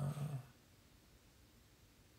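A man's drawn-out hesitation sound, 'uh', for about the first half second, then near silence: quiet room tone.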